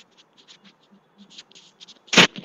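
Faint, irregular scratchy clicks and crackles, several a second, on a video-call audio line that is breaking up, which the speaker suspects comes from network issues.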